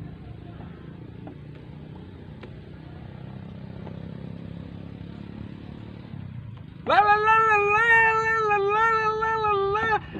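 A man's high, wavering sung wail through a microphone: one long held note that starts about seven seconds in. Before it there are several seconds of low steady background noise.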